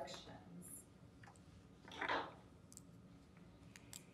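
Quiet meeting-room tone with a few faint, sharp clicks scattered through it and a short soft rustle about two seconds in.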